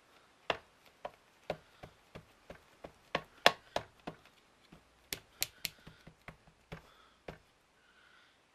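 Repeated light plastic taps and clicks of an ink pad being dabbed onto a stamp mounted on a clear acrylic block, irregular at a few taps a second, busiest and loudest between about three and six seconds in.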